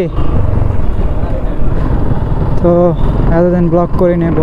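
Motorcycle being ridden, its engine running in a steady low rumble.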